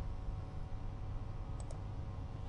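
Low steady background rumble with faint hiss, and a couple of faint clicks about one and a half seconds in.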